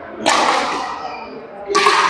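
Two badminton racket strikes on a shuttlecock about a second and a half apart, each a sharp crack that echoes in the hall.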